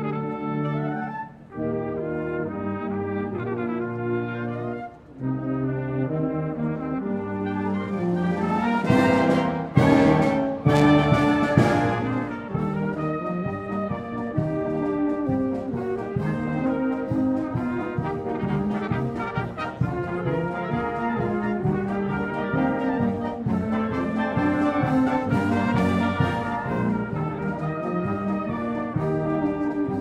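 Military wind band playing, led by trumpets and trombones in full chords. Two short breaks come in the first five seconds. The loudest passage, with percussive crashes, comes about nine to twelve seconds in, and a steady percussion beat runs under the band after it.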